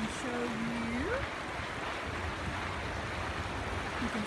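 Shallow, fast-flowing river rushing steadily over its bed. A person's short drawn-out vocal sound rises in pitch in the first second.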